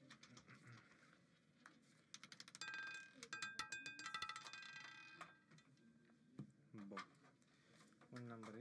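Faint clatter of a roulette ball bouncing across the pockets of a spinning roulette wheel, a quick run of clicks with a metallic ringing that lasts about three seconds, beginning about two seconds in.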